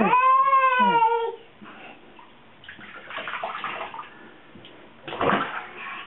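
A baby's high-pitched squeal, held for about a second, then bath water splashing in the tub, with a bigger splash about five seconds in.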